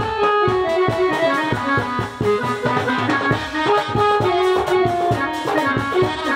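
Live ensemble music for a jatra folk play: a melody of held notes stepping up and down over a steady percussion beat.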